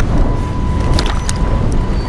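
Wind buffeting the microphone in a steady low rumble, with a faint steady tone and a few light knocks about a second in.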